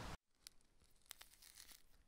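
Near silence between narration, with a few faint ticks.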